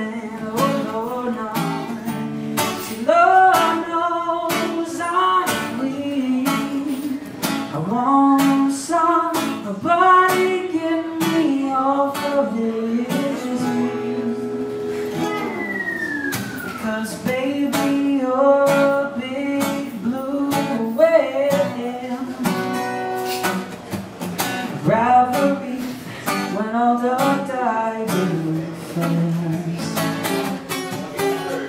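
A strummed acoustic guitar with a man singing over it, performed live: a solo cover of a song.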